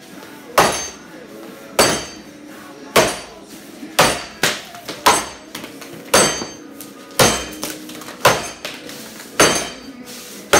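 Racing axe chopping a tulip poplar log in an underhand chop: a sharp, ringing strike into the wood about once a second, nine in all, several of them followed by a lighter second knock.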